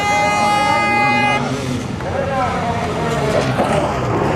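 A single steady horn blast lasting about a second and a half, followed by motorcycle engines revving and rising and falling in pitch.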